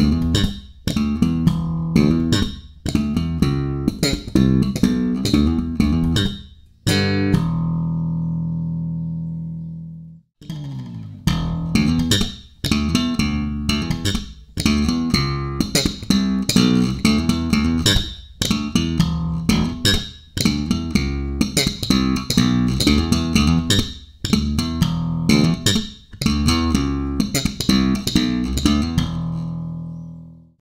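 Five-string Warwick RockBass Corvette electric bass played through a TB Tech Delta active preamp: a groove of plucked notes, with one low note left ringing out and fading about seven seconds in. After a short break about ten seconds in the groove starts again, with the preamp's treble turned up to full.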